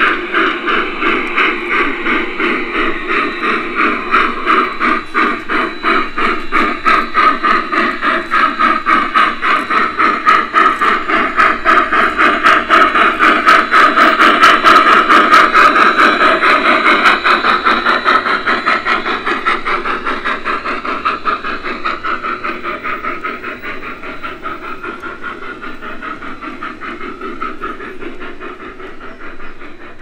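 F-scale model steam locomotive chuffing in a fast, even rhythm as it runs past. It is loudest around the middle, then fades as it moves away.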